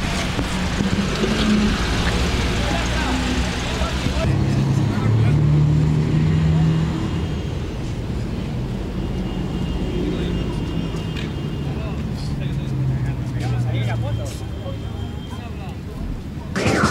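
Busy street sound: a car engine running close by, with a crowd of people talking and calling out around it.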